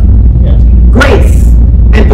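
A woman's voice at a pulpit microphone: one short exclaimed phrase about a second in, over a loud, steady low hum.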